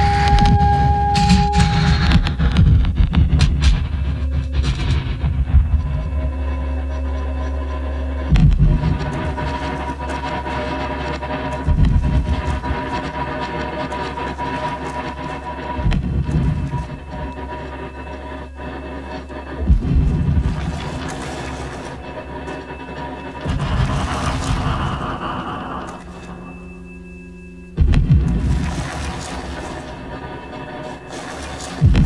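Live experimental electronic music: a dark drone with steady held tones, struck by a deep bass hit about every four seconds that slowly dies away.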